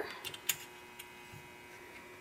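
A few light clicks as a glass microscope slide is slipped under the metal stage clip and the clip settles back on it, the sharpest about half a second in.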